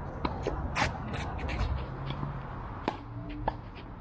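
Faint scattered knocks, clicks and scuffing sounds over a low background noise, with no speech.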